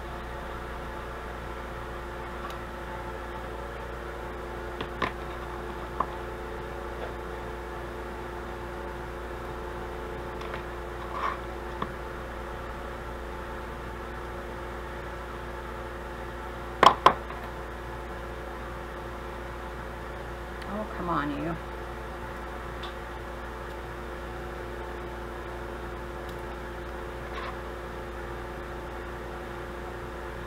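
Light metal clicks of small jewelry pliers working a jump ring and charm, a handful scattered through, the loudest a sharp double click about halfway, over a steady background hum.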